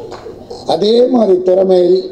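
Only speech: a man's voice at a microphone, quieter at first, then loud with long held vowels from a little before the middle.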